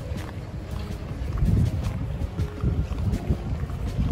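Wind buffeting a handheld camera's microphone, a gusty low rumble that swells and falls, loudest about one and a half seconds in.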